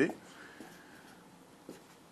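Marker pen writing on a whiteboard: a faint, light scratching with a small tap near the end.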